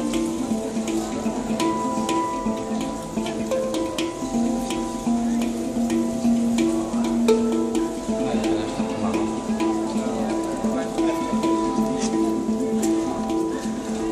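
A handpan (hang drum), a steel tongue-shaped-note drum struck with the fingers, playing a melodic pattern of ringing, overlapping notes in a steady rhythm.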